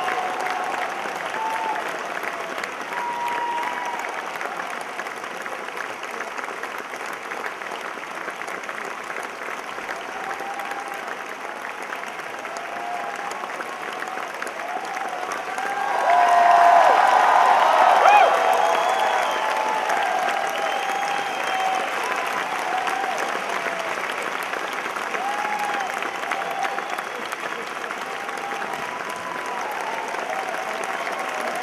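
A theatre audience applauding at a curtain call, steady clapping with scattered shouts and whoops from the crowd. The applause and shouting swell louder about sixteen seconds in, then ease back.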